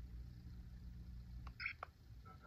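A cheap toddler digital camera taking a picture: about one and a half seconds in, a brief electronic tone, then a short click, over faint handling rumble.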